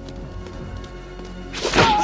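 Film soundtrack music with low held notes, then a sudden loud blow-like thump with a pitched, bending cry over it near the end, the loudest moment.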